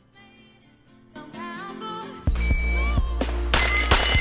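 Background music, then a little over two seconds in the live outdoor sound cuts in. Near the end a quick string of shots from a Limcat Tron carbine starts, with steel plates ringing as each one is hit.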